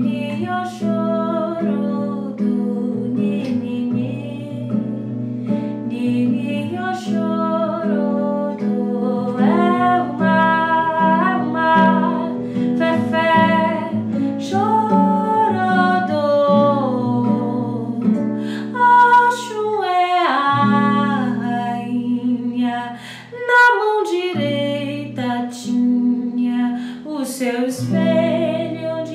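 A woman singing with long held notes, accompanying herself on a classical guitar picked and strummed beneath the voice.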